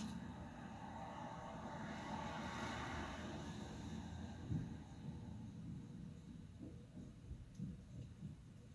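Quiet room with a faint rushing swell through the first few seconds, then a soft knock about halfway and a few fainter knocks near the end.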